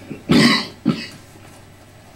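A man coughing twice: one loud cough, then a shorter second one.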